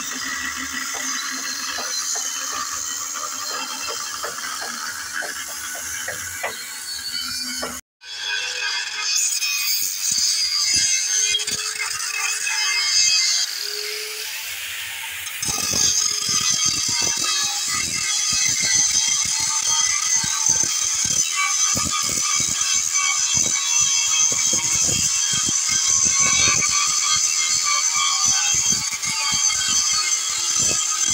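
Background music throughout. From about halfway, an angle grinder grinds down a weld bead on a steel truck chassis rail, adding a denser, harsher layer of high-pitched grinding noise.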